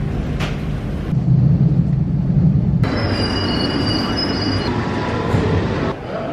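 London Underground train running with a steady low rumble, then high-pitched wheel squeal about three seconds in that stops short of the end.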